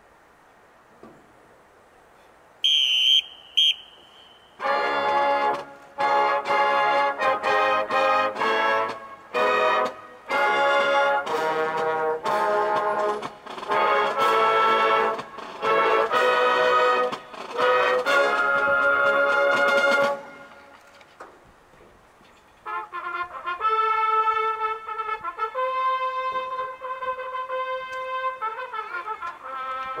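A marching band opening its show. About three seconds in come two short, shrill whistle blasts. Then the full band, led by brass, plays loud, punchy chords in short stabs for about fifteen seconds, stops, and after a short pause comes back with long held brass chords.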